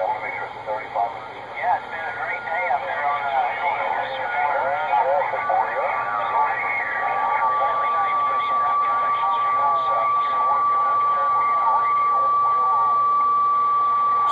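RG-99 radio receiver's speaker playing on-air voices, thin and band-limited. From about five seconds in a steady whistle tone joins and holds: the beat note of someone keying down an unmodulated carrier. The audio holds level without chopping, a sign that the repaired AGC circuit now works.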